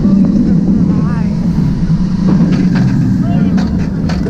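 Steel roller coaster train running at speed, heard from the front car: a loud, steady low rumble of the wheels on the track mixed with wind rushing past. A few sharp clicks come near the end.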